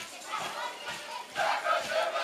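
A group of voices from a Kanak traditional dance troupe shouting and calling out together, over sharp rhythmic beats. The voices grow louder about halfway through.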